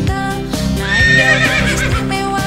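Background music with a steady bass beat. About three-quarters of a second in, a horse's whinny rises over it: a quavering high call lasting about a second.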